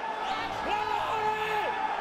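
A voice calling out in a long, drawn-out shout that rises in pitch, holds, then falls away.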